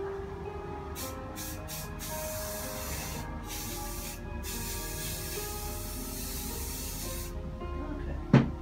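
Aerosol spray can spraying: four short puffs about a second in, then longer hissing bursts with brief pauses, the last about three seconds long, stopping shortly before the end. Background music plays throughout.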